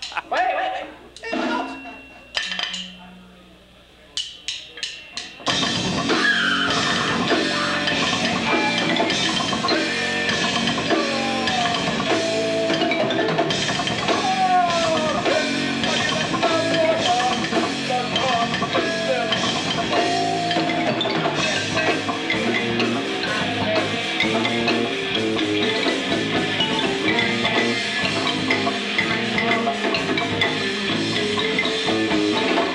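Live band of drum kit, bass guitar, electric guitar and marimba playing progressive metal. A few scattered hits and four quick clicks come first, then the whole band comes in together about five seconds in and plays on loudly.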